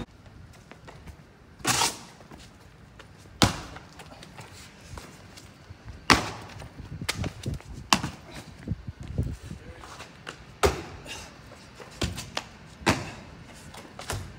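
Parkour landings and footsteps: sneakers landing and slapping on concrete and brick, with hands striking walls. There are sharp single impacts every few seconds and a quick run of smaller steps about halfway through.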